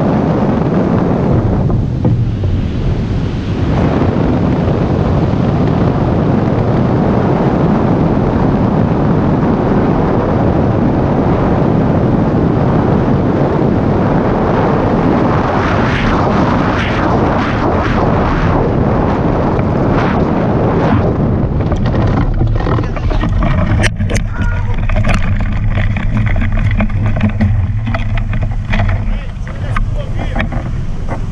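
Loud, steady wind rushing over the microphone of a hang glider in flight. About two-thirds of the way through it falls away as the glider comes down to land, leaving quieter ground sounds with a few sharp clicks.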